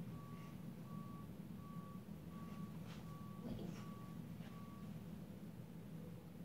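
A steady-pitched electronic beep repeating about every three quarters of a second, which stops about five seconds in, over a low steady hum, with a few soft knocks.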